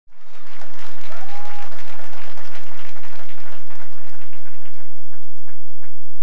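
Audience applause that thins out into scattered claps toward the end, with a short high tone about a second in.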